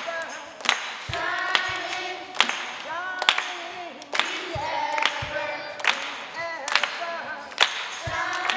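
A choir of children and teenagers singing together, with sharp hand claps keeping time a little more often than once a second and a few low thumps underneath.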